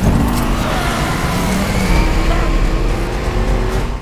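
A car engine revving hard as the accelerator is floored. It is loud and sustained and comes in with a sudden jump at the start, over a film score.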